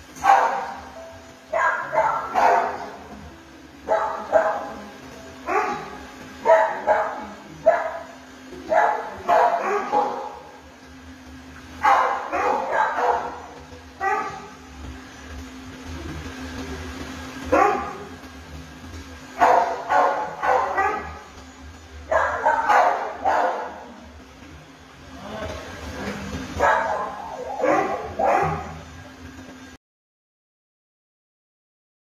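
Dogs barking in repeated bouts of a few short barks each, a second or two apart, with short gaps of quiet between bouts.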